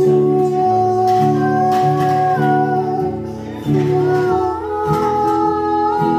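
Live acoustic guitar strumming under a long, held wordless vocal line; the chords change every second or so, and the sung note bends upward toward the end.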